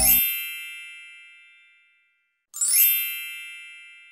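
Two bright, high chime sound effects, each ringing out and fading over about two seconds; the first comes at the very start as the music cuts off, the second about two and a half seconds in, opening with a quick downward sparkle.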